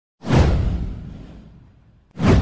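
Whoosh sound effect for an animated intro: a sudden rushing swoosh with a deep low rumble under it, starting a moment in and fading away over about a second and a half.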